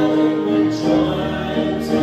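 Voices singing a slow hymn in long held notes, moving to a new note every second or so.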